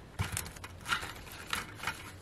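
Light rustling and a few soft clicks of artificial flower stems and greenery being handled and tucked into an arrangement.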